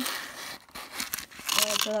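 Plastic LEGO pieces rustling and clicking as a small built model is handled and set down on a table: a brief rustle, then a few sharp clicks.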